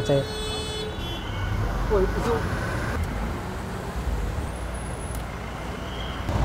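Low, steady rumble of road traffic, with a brief faint voice about two seconds in.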